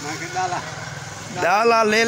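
Steady engine drone from the machinery of a stone flour mill (chakki), with a man's voice coming in about one and a half seconds in.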